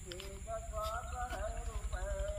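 High-pitched voices talking or calling in the background, in short rising and falling phrases.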